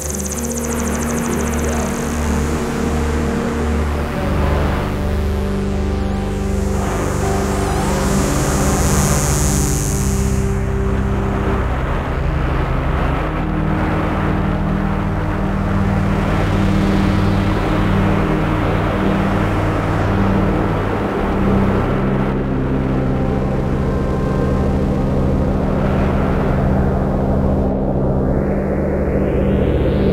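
Ambient electronic music: sustained synthesizer drones over a low, pulsing sequenced arpeggio, with swells of filtered noise early on and a lead voice played live on an Eigenharp.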